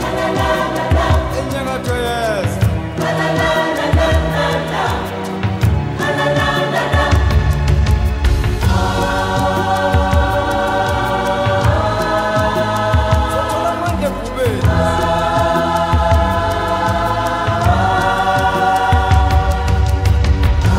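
Background music: a choir singing long held chords, changing every few seconds, over a steady bass line.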